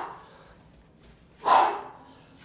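A man breathing out hard in short huffs with the effort of a side-plank exercise: the end of one breath right at the start and a second, fuller one about a second and a half in.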